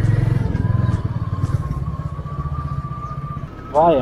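Motorcycle engine running as it is ridden along the road, a steady low pulsing drone heard from the rider's seat that eases slightly near the end.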